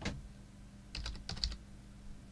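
Typing on a computer keyboard: a quick run of four or five keystrokes about a second in, as the word "test" is typed.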